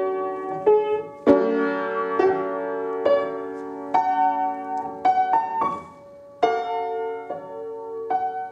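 Upright piano playing slow chords, struck about once a second and left to ring, with a quicker run of notes about five seconds in, a brief lull, then a strong chord. The piano is out of tune.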